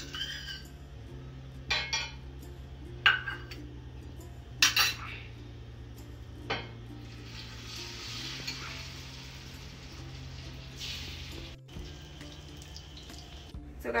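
A metal spoon clinks sharply against a steel bowl and a frying pan about four times. Then beaten egg for an omelette sizzles in hot desi ghee as it is poured into the pan.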